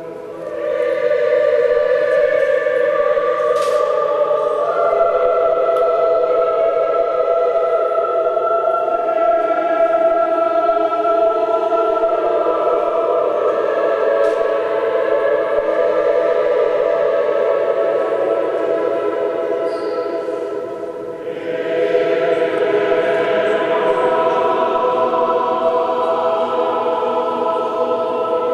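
Church choir singing Orthodox liturgical chant a cappella in long, slowly changing held chords. The singing dips briefly about three-quarters of the way in, then a new phrase begins.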